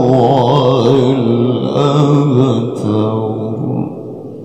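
A male qari reciting the Quran into a microphone in melodic tilawah style: a long, ornamented phrase whose pitch wavers and turns. The phrase ends just before the close, leaving a short fading echo.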